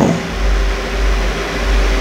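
A steady low rumble with a faint hiss, swelling in shortly after the start.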